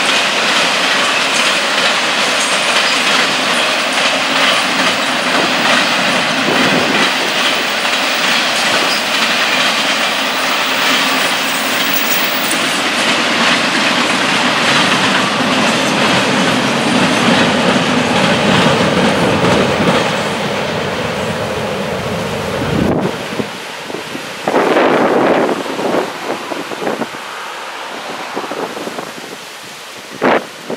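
Freight train of autorack cars rolling past at close range, steel wheels running steadily on the rails. The noise thins out about two-thirds of the way in as the last cars go by, and gusts of wind buffet the microphone near the end.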